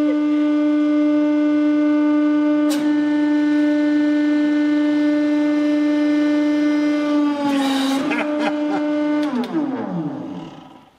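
Hydraulic press's pump running with a loud, steady whine. The pitch sags slightly about seven and a half seconds in, as the ram squashes the figure on the anvil, with a short scrape of noise, then the whine falls away steeply near the end as the press stops. A single click comes about three seconds in.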